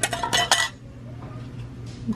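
Small glass jar candles with metal lids clinking and knocking against each other as one is lifted from a crowded shelf: a few sharp clinks in the first half-second or so.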